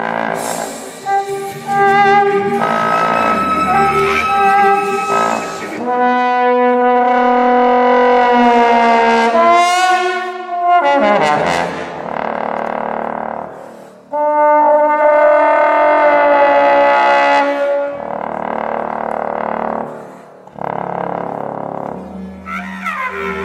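Bass trombone holding long notes, with a slide in pitch about ten seconds in, alongside bowed cello in a contemporary chamber piece. Stretches of airy hiss come between the held notes.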